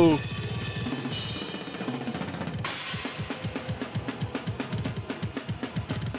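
Black metal drumming on a full drum kit: rapid, evenly spaced double bass drum strokes under snare hits and cymbal wash.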